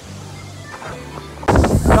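Faint background music, then about one and a half seconds in a sudden loud rush of wind over the microphone of a rider on a moving roller coaster.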